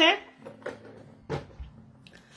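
A couple of short knocks as things are put down and handled on a table, the louder one about a second and a half in: pieces of jewelry being set aside.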